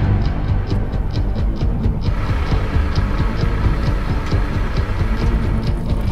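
Background music: a low, heavy throb with a quick, light ticking beat on top.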